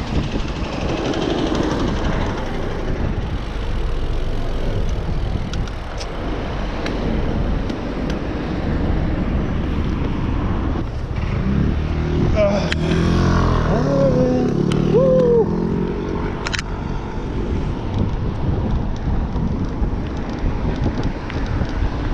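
Steady rumble of wind on a bicycle rider's action-camera microphone, mixed with city road traffic, as the bike rides along. About halfway through, a wavering pitched sound rises over the rumble for a few seconds, and a sharp click comes soon after.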